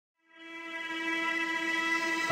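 A single sustained synthesizer note fading in from silence and holding at one steady pitch: the opening of a logo intro jingle.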